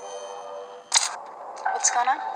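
Horror-film trailer soundtrack played back: a held drone of steady tones, broken just under a second in by a sharp hit, then a voice near the end.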